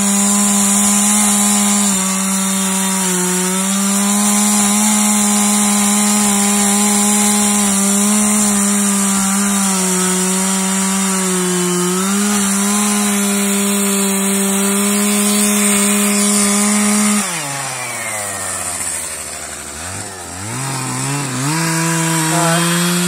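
Chainsaw running at high revs, cutting into a fatwood stump, its pitch sagging a little now and then as it bogs under load. About seventeen seconds in the throttle is let off and the engine drops to idle, then revs back up near the end.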